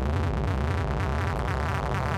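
Sequenced synthesizer notes from a Bass Station bass synth and a Synthstrom Deluge synth part playing as a very fast, even stream over a steady bass, at a tempo of a few hundred BPM that is being pushed higher.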